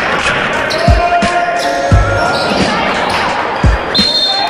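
Basketball dribbled on a hardwood gym floor, several low bounces about a second apart, over the voices of players and spectators echoing in a large gym.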